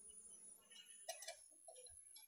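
Near silence, with a few faint light taps and rustles as a damp wheat-flour mixture is pushed by hand into a steel puttu tube.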